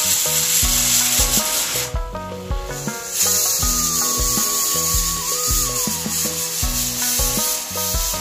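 Stovetop pressure cooker venting steam: a steady, loud hiss that breaks off for about a second around two seconds in. Background music plays underneath.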